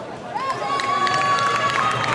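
Arena crowd noise swelling about half a second in, with one long steady high call held for over a second and scattered claps over it.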